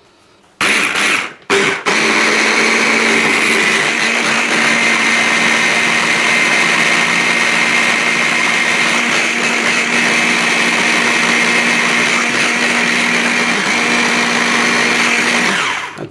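Electric stick blender with a chopper bowl attachment blitzing a coriander, garlic, ginger, lime juice and oil dressing to a coarse paste. Two short pulses come about a second in, then the motor runs as a steady whine until it cuts off near the end.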